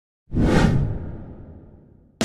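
A whoosh sound effect for an animated logo intro, with a low rumble under it. It comes in suddenly about a quarter of a second in and fades away over the next second and a half.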